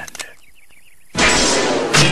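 Cartoon sound effect: a sudden loud clanging crash about a second in, after a brief faint wavering tone.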